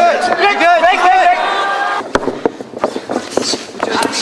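A man shouting from ringside over arena crowd noise for the first second or so. After that comes crowd murmur with several sharp smacks of strikes and bodies in the ring.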